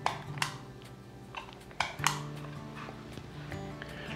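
Surgical skin stapler clicking sharply as it is squeezed and released to place staples: a pair of clicks near the start and another pair about two seconds in, over soft background music.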